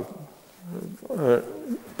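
A man's voice pausing mid-sentence: a short low hum, then a drawn-out vowel sound before he goes on speaking.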